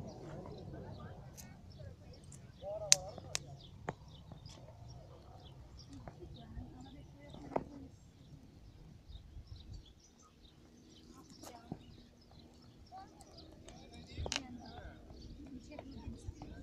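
Outdoor ambience of small birds chirping throughout, with faint voices now and then and a few sharp clicks.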